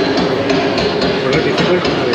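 Music from the exhibit's sound system, with quick sharp knocks several times a second.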